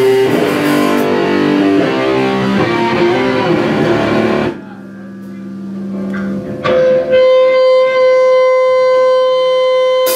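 Distorted electric guitar played loud through an amplifier in a small room: chords until about four and a half seconds in, where it stops abruptly and a low note rings on. From about seven seconds a single high note holds steady and unbroken.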